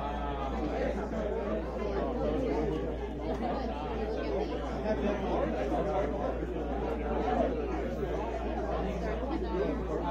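Crowd chatter: many voices talking at once in a large hall, none picked out, over a steady low hum.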